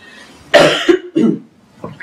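A woman coughing twice: one loud cough about half a second in, followed by a shorter one.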